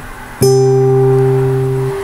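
Classical guitar strummed: after a short gap, one chord is struck about half a second in and left to ring out.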